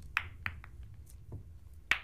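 Snooker balls clicking against one another in a scattered run of sharp knocks that fade away, with one louder click near the end.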